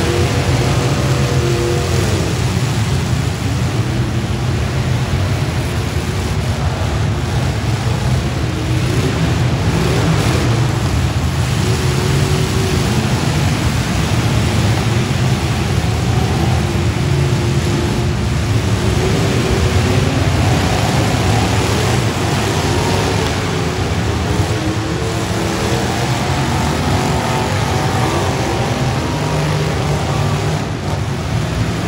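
Many demolition-derby truck and van engines revving at once, their pitches rising and falling over one another above a steady low drone.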